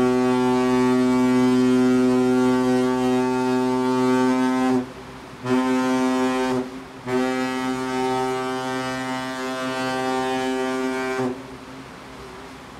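Hurtigruten coastal ship's horn sounding three loud blasts of one deep steady note: a long blast of about five seconds, a short one of about a second, then another long one of about four seconds.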